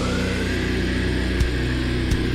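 Heavy hardcore song in a held passage: the drums drop out and a low distorted electric guitar chord rings on under a rising whine, with a single hit about one and a half seconds in.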